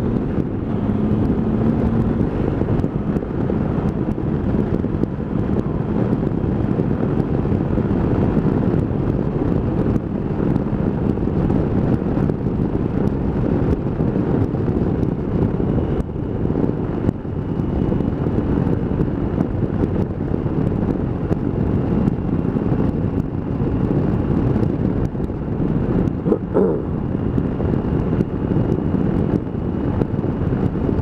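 Wind rushing over the microphone of a Triumph motorcycle cruising at road speed, heard as a steady, dense low rumble mixed with the bike's running engine. There is a brief bump about 26 seconds in.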